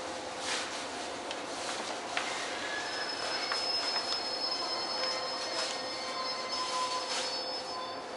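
Train wheels squealing on the rails: thin high steady tones come in about two seconds in and hold, over a steady hum and scattered clicks.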